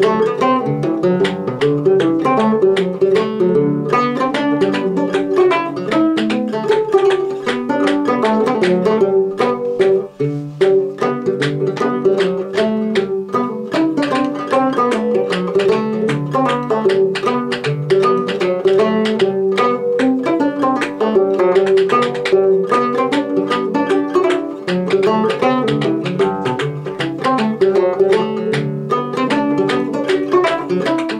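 Fretless gut-strung minstrel banjo played in stroke style, picking out an old fiddle hornpipe in a quick, steady run of plucked notes, with a brief break about ten seconds in.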